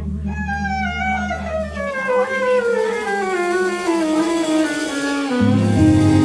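Live honky-tonk country band near the close of a song: a string instrument slides slowly and steadily downward in pitch for about five seconds while a held low note drops out about two seconds in, then the band comes in on a loud chord just before the end.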